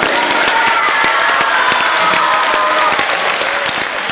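Audience applauding: a dense, steady run of clapping that eases off slightly near the end.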